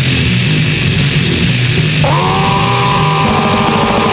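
Powerviolence / grindcore band playing loud, dense, distorted music. About halfway through, a long held note comes in over it.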